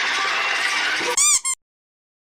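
Award-show audience cheering and screaming. Then a loud, high squeal rises and falls twice, and the sound cuts off abruptly to dead silence about one and a half seconds in.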